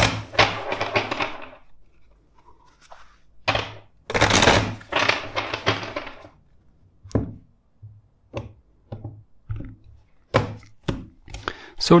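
A tarot deck being shuffled by hand twice, each shuffle a dense rattling run of cards lasting a second or two, followed by a series of separate light taps and knocks as the deck is squared and handled on the table.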